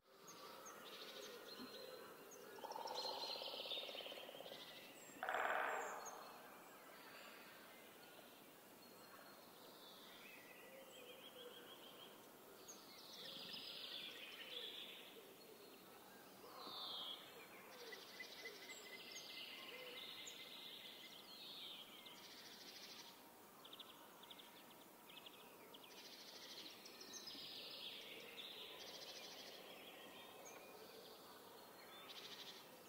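Faint countryside ambience of many birds chirping and singing, with a louder call about five seconds in.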